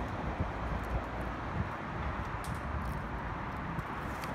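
Outdoor background noise: wind buffeting the phone microphone over a steady hum of the surroundings, with a few faint clicks.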